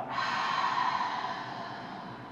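A woman's big audible breath out, a breathy rush that starts strong and fades away over about a second and a half.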